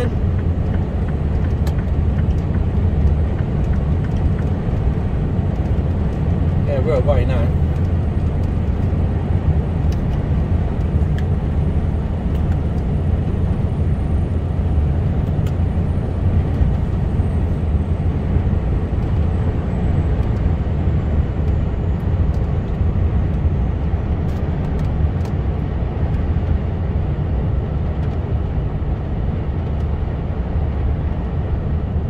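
Steady low rumble of a Mercedes Actros truck heard from inside its cab while cruising, engine drone and tyre noise blended with no change in pace.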